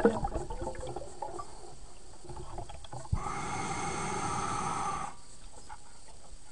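Underwater sound of a scuba diver breathing through a regulator: small clicks and a low water murmur, then about three seconds in a breath hisses for some two seconds and stops.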